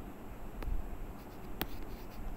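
A pen stylus on a tablet writing surface, giving two sharp taps about half a second and a second and a half in, over low handling noise.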